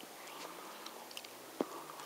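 Car engine idling faintly, heard from inside the cabin as a low steady hum, with scattered small clicks and one sharp click about one and a half seconds in.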